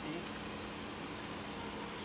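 Steady low hum of a police car's engine idling, with no changes.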